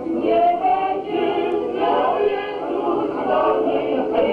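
A group of men and women in a Podhale highland folk ensemble singing together as a choir, several voices holding and moving between notes.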